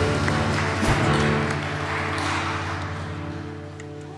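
A worship band's final chord of acoustic guitar and keyboard held and slowly fading away, with a low thump about a second in.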